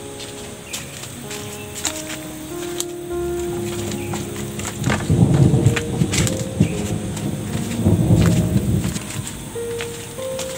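Background music with slow held notes. Split bamboo sticks clatter and knock as they are gathered by hand from a pile, in two bursts, one about five seconds in and a louder one around eight seconds.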